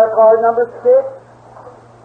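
A man speaking on an old, muffled recording, with a steady low hum beneath. The speech comes in short phrases and pauses near the end.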